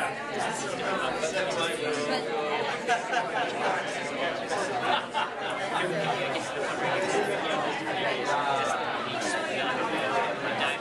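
Many people talking at once in small groups: steady, overlapping chatter that fills a large room, with no single voice standing out.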